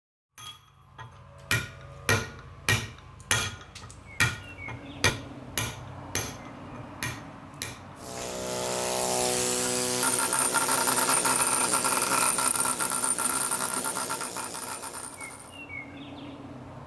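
Hammer blows on a chisel against marble, about a dozen sharp ringing strikes roughly every half second. About halfway through, a pneumatic air chisel starts up and runs steadily, chattering against the stone, then fades out near the end.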